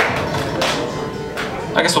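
Acoustic guitar strummed and picked loosely, with a few sharp strokes, while voices carry on underneath.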